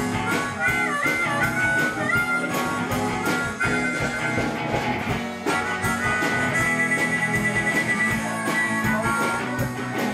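Live band music with a harmonica solo played into a microphone: bending notes in the first half and a long held high note in the second. It runs over strummed guitar and a steady beat.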